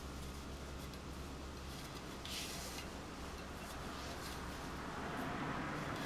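Faint rustling and rubbing of cord being wrapped and pulled around a baton shaft, with one brief louder swish about two seconds in, over a steady low hum.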